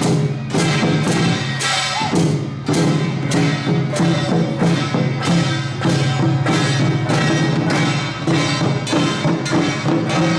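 Large barrel drums and pairs of brass hand cymbals beating together in a steady, even marching rhythm, about two to three strikes a second, the cymbal crashes ringing over the drum tone.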